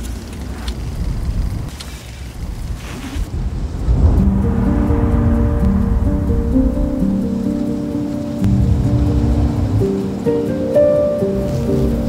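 Layered film soundtrack: rain and traffic ambience with a low rumble. About four seconds in, music of long held, sustained notes enters over it.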